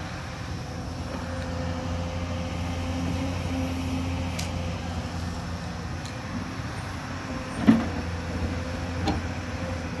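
Hyundai crawler excavator's diesel engine and hydraulics running steadily under load as it digs into the hillside, a continuous low drone with a steady hum over it. A sharp knock of the bucket about three-quarters of the way in, and a lighter one about a second later.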